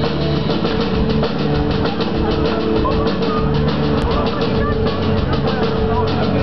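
Live rock band playing in a concert hall: a drum kit keeps a fast, steady beat on the cymbals under guitar.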